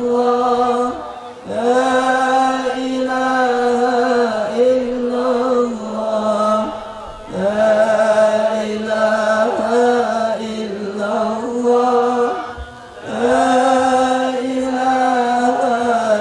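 Dhikr chanting: a melodic Islamic devotional chant sung in long held phrases of a few seconds each, with short pauses for breath between them.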